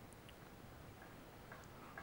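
Near silence: faint background hiss with a few tiny, faint clicks.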